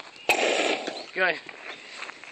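A handheld dry-powder fire extinguisher is triggered at burning gasoline. It gives a sudden loud hissing blast about a third of a second in, which lasts under a second and then carries on more faintly.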